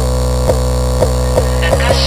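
Dark trap instrumental in a break with no kick or 808 hits: a steady low droning bass with short blips over it about every half second, quickening into a fast roll near the end.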